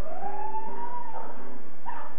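A single high sung note that slides upward, holds for about a second and a half, then falls away, over fainter steady accompanying tones: part of the live music in a stage play.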